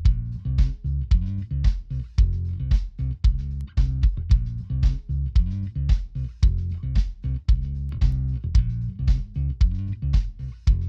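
Playback of a mix of a kick drum, bass guitar and percussion, with the kick thumping about twice a second. The bass guitar's low end is sidechain-compressed by a multiband compressor keyed from the kick, so that band dips on each kick hit and the kick and bass sound cleaner together.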